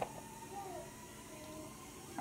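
Faint whimpering from a dog: a short high whine that rises and falls about half a second in, and a briefer one near the end.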